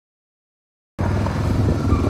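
Silence, then about a second in a farm quad bike's engine running at a steady low pitch cuts in suddenly.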